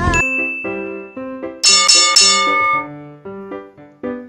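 A phone alarm tone playing a chiming melody of short ringing notes, with brighter chime chords about halfway through.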